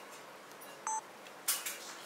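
A single short electronic beep just before a second in, followed by a couple of faint clicks over low room tone.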